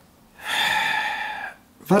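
A man's long audible breath, about a second, drawn in a pause before he speaks again.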